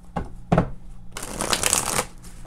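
A deck of oracle cards being shuffled by hand: two short sharp card snaps in the first half second, then about a second of fast, dense shuffling through the second half.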